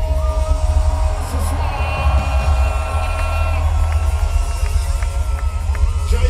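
A live band playing music through a concert PA: drums, bass and guitars with held notes and a very heavy low end, recorded from the audience.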